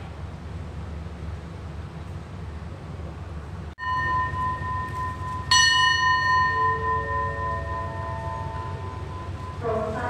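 A station bell rings out over the steady low hum of the waiting train: a clear ringing note starts about four seconds in, is struck sharply about halfway through and rings on, followed by a few short tones stepping upward. It is the departure signal for the train.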